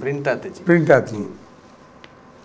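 A man speaking in two short phrases during the first second, then a pause with only quiet room tone.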